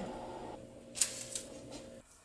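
Soft rustling as gloved hands roll a dough crescent on a silicone baking mat, with two brief rustles about a second in, over a faint steady room hum.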